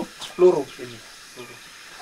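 Brief speech: a man's short spoken syllable about half a second in, then a few fainter ones, over a low steady background hiss.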